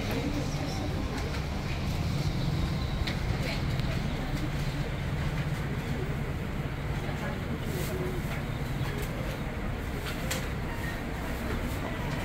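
Steady low rumble with indistinct voices in the background and a few faint clicks.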